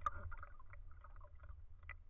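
Sea water lapping and sloshing around a camera at the surface, over a steady low rumble, with scattered small knocks and splashes.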